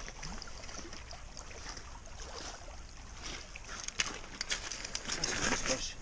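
Gentle water lapping at a shingle shore, with scattered faint clicks and rustles that grow louder and more frequent in the last couple of seconds as a freshly caught sea trout is landed and handled over the pebbles.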